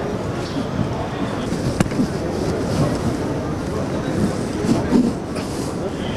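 Busy city street ambience heard while walking: indistinct voices and a steady rumble of movement. There is a single sharp click about two seconds in.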